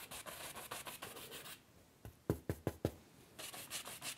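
Large painting brush scrubbing oil paint onto a stretched canvas in quick back-and-forth strokes, with a short pause near the middle followed by a few louder hits of the brush on the canvas.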